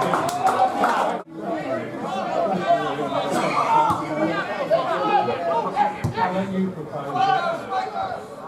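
Many voices of spectators and players talking and calling out over one another. The sound cuts out briefly about a second in, and there is a single thump about six seconds in.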